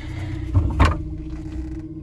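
Electric trolling motor running with a steady hum. A short thump, the loudest sound here, comes about three-quarters of a second in.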